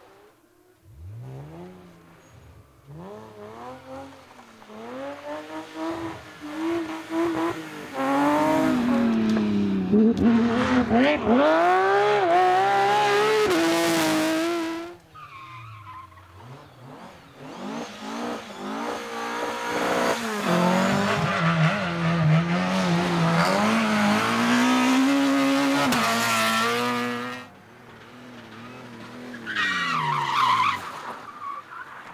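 A string of rally cars, one after another, taken hard through a gravel corner. Each engine revs up and drops back again and again as the car slides, with tyre noise on the loose surface. The two loudest passes come in the middle.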